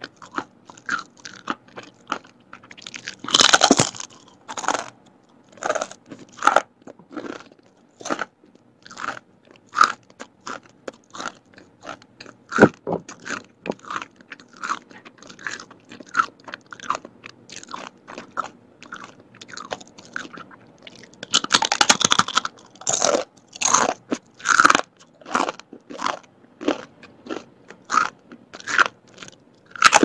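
Close-up crunching and chewing of a crispy fried, battered vegetable cracker. Loud bites come a few seconds in and again about two-thirds of the way through, with steady chewing crunches about two a second between.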